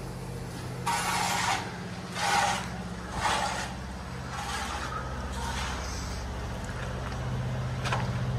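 A steady low engine drone from running machinery, with five gritty scuffing footsteps on stone and debris, about one a second, in the first six seconds.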